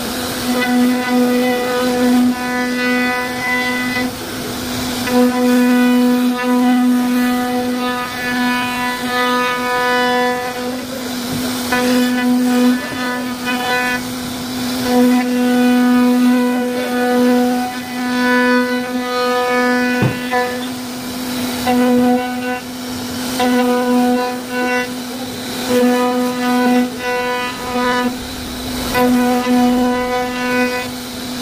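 CNC router spindle whining at a steady high pitch as its bit carves a relief pattern into a wooden door panel. The cutting sound swells and fades every second or two as the bit moves through the wood.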